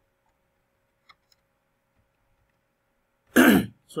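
A man clears his throat once, loudly and briefly, near the end, after two faint computer-mouse clicks about a second in.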